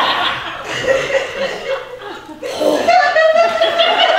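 Audience laughter in a theatre, mixed with a man's drawn-out voice held on one pitch in the last second or so.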